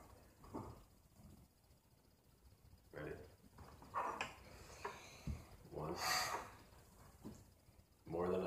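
Short, quiet vocal sounds and breaths from people at a table, one of them breathy, with a single soft thump about five seconds in.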